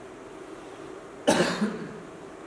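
A young man coughs once, sharply and close on a headset microphone, about a second and a quarter in.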